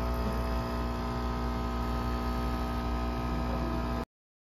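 Single-serve coffee machine's pump humming steadily as it brews coffee into a cup.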